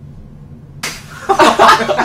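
Quiet room tone, then about a second in a sudden sharp noise, followed by women bursting into loud laughter.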